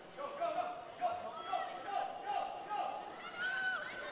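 Several high-pitched shouted calls from players during open play, heard faintly from the pitch with no clear words.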